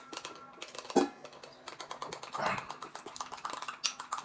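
Spoon and chopsticks clicking and tapping against bowls during a meal: a run of small irregular ticks, with one sharper knock about a second in and a short noisy eating sound around the middle.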